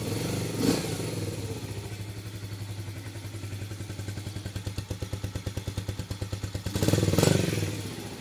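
Yamaha Krypton two-stroke underbone motorcycle engine idling just after starting, with a fast even beat, then blipped briefly to a louder rev near the end. It runs without odd noises, the seller says.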